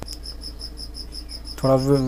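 Insect chirping in a steady high pulse, about five chirps a second, over a low steady hum. A man's voice comes in near the end.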